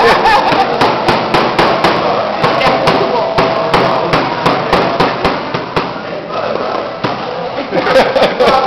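Crab shells and claws being cracked with small wooden mallets on a table: rapid, irregular knocks, about three a second, thinning out after about six seconds, over a steady background of voices.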